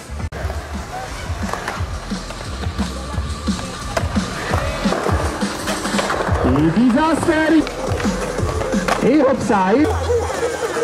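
Skateboard riding on concrete ramps: wheels rolling and the board clacking as tricks are tried. It sits under background music with a steady beat.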